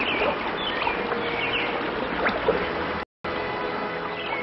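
Mountain stream water rushing and splashing over rocks in a steady rush. The sound breaks off for a moment about three seconds in.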